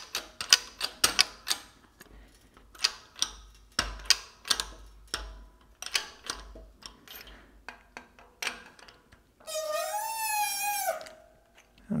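Irregular metallic clicks and ticks from a 12-ton hydraulic shop press being worked slowly to seat a pocket bearing into a transfer case input gear. A short squeal that rises and falls in pitch comes about ten seconds in.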